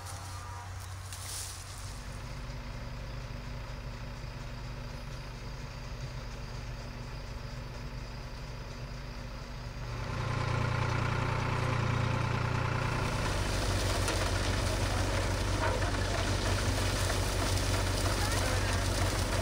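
Steady low drone of a farm engine driving a peanut threshing machine, growing clearly louder about ten seconds in.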